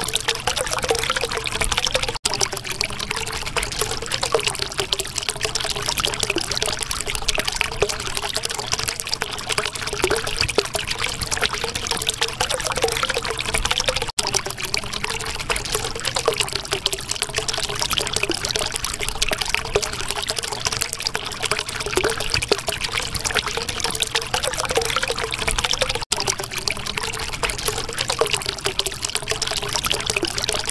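Running water trickling and pouring in a continuous, steady splashing flow. It cuts out for an instant three times, about every twelve seconds.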